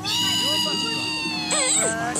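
Several cartoon soundtracks playing over one another: a jumble of overlapping high-pitched cartoon voices, speech and squeaky sound effects at a steady level.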